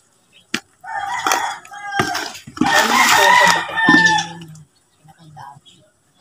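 A rooster crowing: long pitched calls starting about a second in, loudest in the middle and ending over a second before the end.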